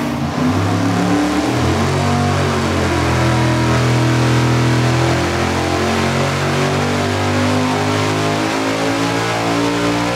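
Supercharged 555-cubic-inch big-block Chevy V8 with an 8-71 roots blower running a full-throttle engine-dyno pull, sweeping up through the revs. It is on gasoline, at about 11.7 psi of boost from a larger crank pulley.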